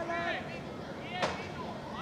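Distant shouts and calls of voices across an outdoor football pitch, with one sharp knock about a second in.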